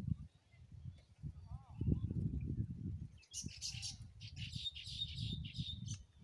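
Birds chirping: a short call about a second and a half in, then a rapid run of high chirps through the second half, over an uneven low rumble.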